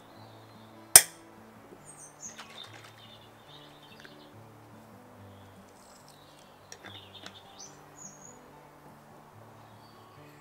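One sharp clink about a second in, as the wire clip-top lid of a glass jar is snapped open. Behind it run soft background music and birds chirping, with a few faint clinks later on.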